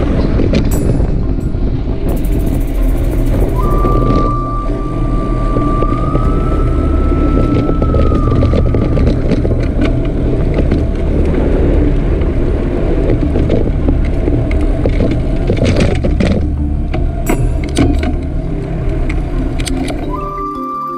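Wind rushing and buffeting on a bicycle-mounted camera's microphone while riding, a loud steady rumble. A thin high tone holds for about five seconds, starting about four seconds in.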